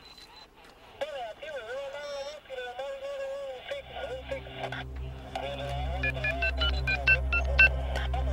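Telephone keypad touch-tone dialing: a quick run of short two-note beeps, one for each key pressed, starting about six seconds in.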